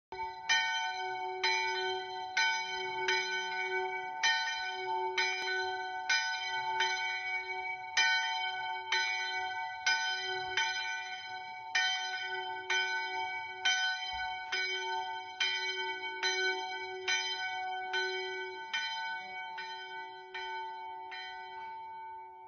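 Church bell in a small village chapel's belfry tolling repeatedly, about one and a half strokes a second in a slightly uneven rhythm. The strokes fade and stop near the end.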